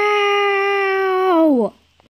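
A long, steady wailing call held on one pitch, then sliding down and cutting off about one and a half seconds in.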